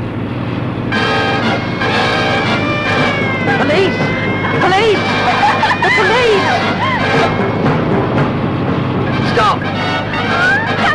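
Film soundtrack of a speeding car: a steady engine hum, joined about a second in by music with long held notes, with voices rising and falling in pitch over it.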